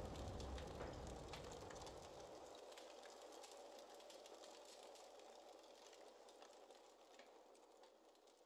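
Faint hiss with scattered small crackles, fading out to near silence.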